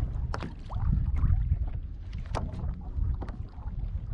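Wind rumbling on the microphone over water lapping against a plastic kayak hull, with scattered short knocks and splashes at uneven intervals.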